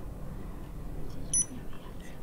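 Touch-screen ventilator controller giving one short, high beep about halfway through, as a long press on its mode button switches it into parameter-setting mode.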